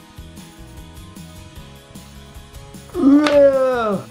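Soft background music, then about three seconds in a child's long, playful vocal cry that rises and then falls in pitch, lasting about a second and much louder than the music.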